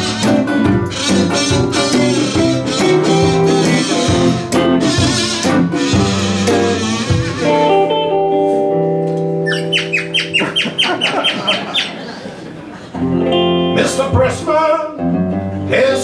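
Live acoustic guitar and resonator guitar playing an upbeat instrumental intro. About halfway through the playing drops back to quieter held notes with a quick run of short high notes, then the busy strumming comes back near the end.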